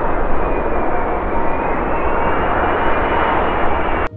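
Airbus A380 airliner's four jet engines on landing approach with gear down: a steady, loud roar with a faint high whine that falls slightly.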